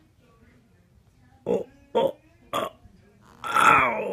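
A voice making three short grunts about half a second apart, then a longer, louder drawn-out vocal sound near the end.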